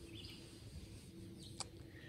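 Faint outdoor ambience with distant bird chirps, and a single sharp click about three quarters of the way through.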